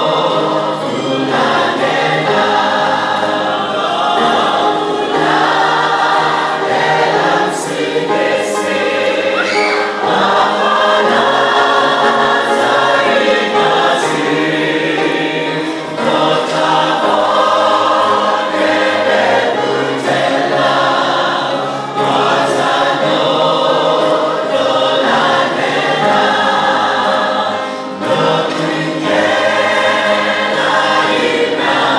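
A large group of voices singing a hymn together in a church hall, with short breaks between phrases.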